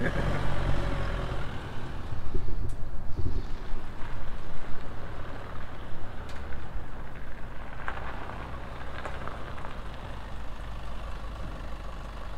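Chevrolet pickup truck driving on the street, its engine and road noise mixed with uneven low rumbling of wind on the microphone, louder for a few seconds early in the stretch.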